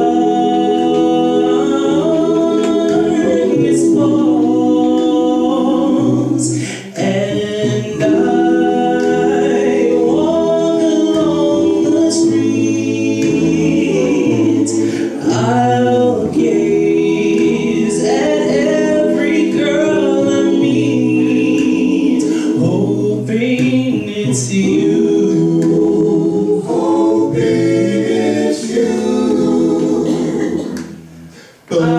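A male vocal group of six singing a cappella in close harmony, with held chords and no instruments.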